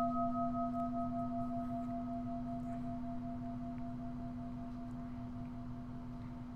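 A meditation bell, struck once just before, rings on as a steady low hum that slowly fades. Its higher overtones die away about halfway through. It is a mindfulness bell, sounded as a call to stop and listen.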